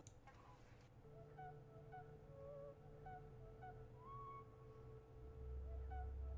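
Very faint soundtrack of the video being watched: short high notes repeating about twice a second over a held tone, with a low hum coming in near the end.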